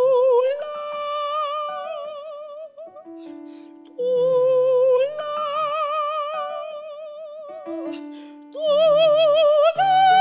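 Solo soprano singing an art song with wide vibrato, accompanied by piano chords. Three long held phrases, each starting loud and fading away, the third climbing higher near the end.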